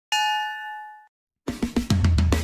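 A notification-bell chime sound effect: a single ding of several tones ringing together, fading out over about a second. About a second and a half in, a backing track starts with a steady drum beat and bass.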